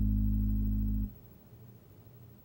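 Four-string electric bass guitar sustaining a low note, the last note of the line, fretted at the fourth fret of the E string, then damped so it cuts off sharply about a second in.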